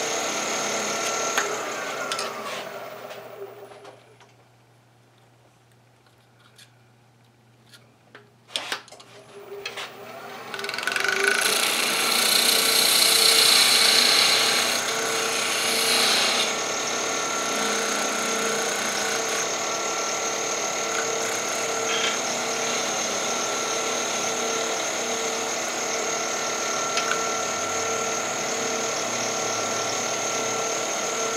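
Wood lathe motor running, then winding down and stopping a few seconds in. After a few seconds of near silence with a few small clicks, it starts up again and runs steadily. There is a louder hissing stretch for a few seconds just after it comes back up to speed.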